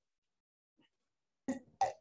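Near silence on a video call, then near the end two brief vocal sounds as a woman starts to speak.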